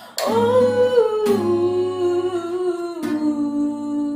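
A woman humming long held notes that step down in pitch twice, with an acoustic guitar strummed a few times underneath: the closing phrase of a slow love song.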